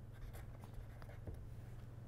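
Pen writing on paper: faint, short scratchy strokes as a few characters are written out, over a low steady hum.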